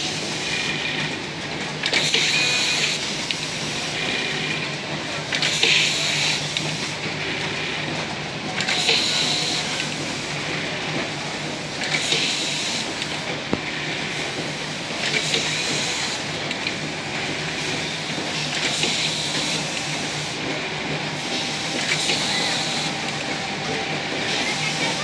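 Industrial programmable pattern sewing machine running, stitching through a clear plastic template: a steady hum under a fast, hissing clatter of stitching that swells about every three seconds.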